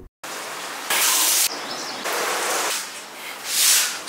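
A steady hissing rush like flowing water, with a louder burst of hiss that starts and stops sharply about a second in and a second louder surge that swells and fades near the end.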